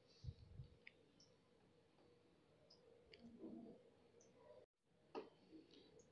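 Near silence: faint room tone with a few soft clicks and low knocks, the loudest ones about a quarter-second in and about five seconds in.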